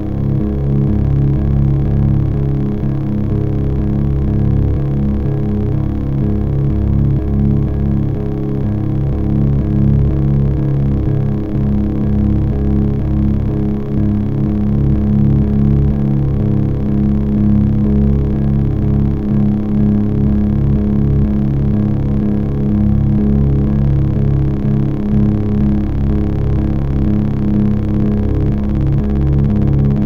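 Dense, steady low electronic drone of many stacked tones, with a fast flutter in the bass, from an improvised set of electric guitar run through effects pedals and a synthesizer.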